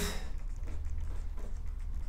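Marker pen writing on a whiteboard: faint, short scratchy strokes over a low steady hum.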